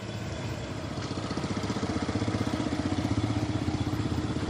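A small motor vehicle's engine approaching and running with a rapid, even beat, growing louder from about a second in.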